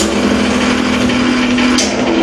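Live noise music from homemade electronic noise instruments: a loud, dense wall of noise with one steady low drone held through it, and a sharp hit at the start and another near the end.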